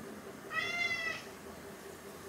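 A domestic cat meowing once, a single call about two-thirds of a second long and steady in pitch, looking up at its owner.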